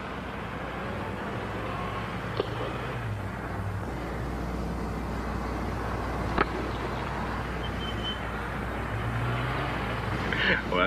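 Steady hiss and low hum of an old broadcast soundtrack carrying faint outdoor ballpark ambience, broken by two sharp knocks: a faint one about two seconds in and a louder one about six seconds in.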